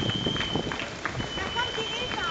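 Marathon runners' footsteps slapping on asphalt as a group passes, with spectators' voices in the background. A steady high-pitched tone runs underneath.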